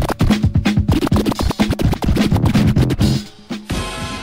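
DJ mix music with rapid turntable scratching over a beat. Near the end it drops away and changes into a different track.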